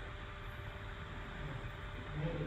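Steady background hiss with a faint low hum.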